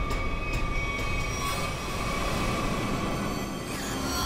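Dramatic TV background score: a sustained, droning chord of several steady high tones over a low rumble, growing fuller about a second and a half in.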